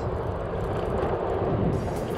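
Yokamura i8 Pro electric scooter riding at about 19 km/h in dual-motor mode, picking up speed, with steady wind and road noise on the handlebar microphone.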